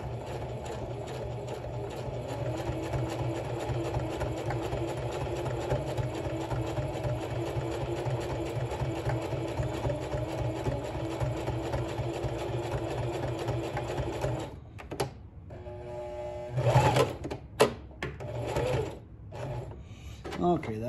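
Singer Heavy Duty sewing machine running steadily, stitching through layers of fleece, then stopping about three-quarters of the way through. A short slower run and a couple of sharp knocks follow as the end of the seam is backstitched to lock it.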